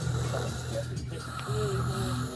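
A person growling in a low voice, in two long stretches with a short break about a second in.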